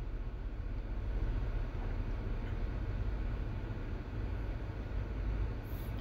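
Steady low background hum with a faint even hiss, with no distinct handling sounds.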